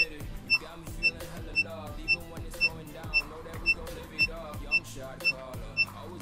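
VIFLY Finder 2 lost-drone buzzer beeping in its low-intensity mode, which starts once the drone battery is disconnected: short high beeps, evenly about two a second, with music underneath.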